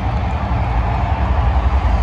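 Loud, steady deep bass rumble from the stadium sound system during the lights-out team introduction, over crowd noise, growing slightly louder.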